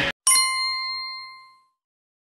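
A single bright bell-like ding, a chime sound effect on an outro logo card, struck once and ringing out, fading away over about a second and a half. Just before it the film's soundtrack cuts off abruptly.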